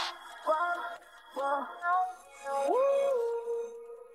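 Isolated auto-tuned rap vocals with no beat: a few short sung ad-lib syllables, then one note that slides up and is held, fading away.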